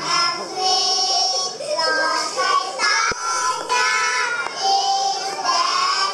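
A group of young children singing a devotional song together.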